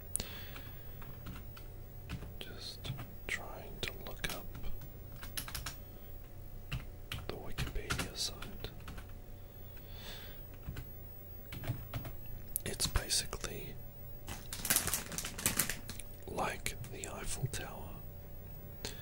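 A man whispering close to the microphone, too soft to make out, with many small sharp clicks scattered through it and a few louder hissy stretches in the second half.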